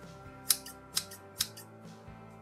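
Steel scissors snipping three times, about half a second apart, the first snip the loudest, over background music.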